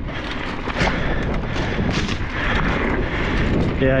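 Scott Ransom full-suspension mountain bike running fast down hard-packed dirt singletrack: a steady rumble of tyres and rushing air, with a quick, uneven run of rattles and knocks from the bike over the bumps.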